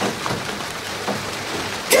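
Steady rain falling, an even hiss of rain as the song's storm begins.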